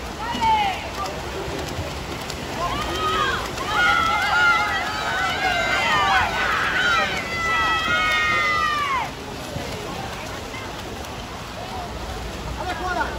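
Spectators shouting and cheering on swimmers in a backstroke race: several high voices overlap, loudest from about three to nine seconds in, then die down to a steady background wash.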